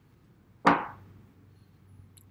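A single sharp thump about two-thirds of a second in, dying away quickly, over a faint low hum.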